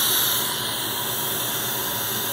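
Dental suction tip running in the mouth, a steady airy hiss.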